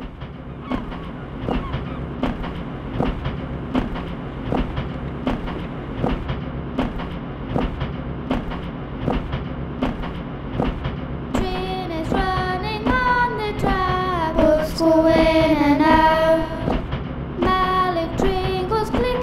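Train running on rails: a steady rumble with rhythmic clickety-clack of the wheels about every three-quarters of a second. About eleven seconds in, children start singing over it.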